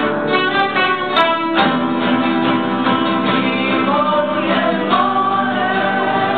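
A teenage boy singing a song, accompanied by an ensemble of five acoustic guitars playing together.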